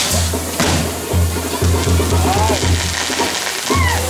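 Music with a steady low beat pulsing about twice a second, over the continuous hiss and crackle of a burning fireworks castillo, with a few short rising whistles in the second half.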